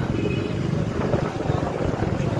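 Low, steady rumble of a moving vehicle and the traffic around it, heard from on board while riding along a road.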